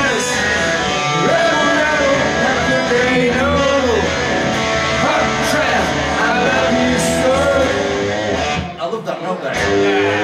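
Man singing into a microphone while playing an electric guitar live through a PA, with a short dip in the sound a little before the end.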